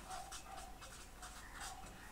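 Pen writing on paper, a run of short, faint strokes as a word is written out.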